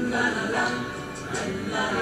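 Voices singing a "la la la" refrain of a Mandarin song, a syllable every fraction of a second.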